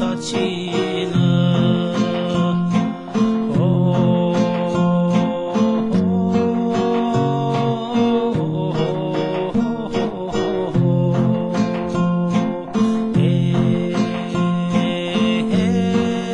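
Two acoustic guitars playing an instrumental passage of a Turkmen song, with a steady rhythm of strummed chords under a plucked melody.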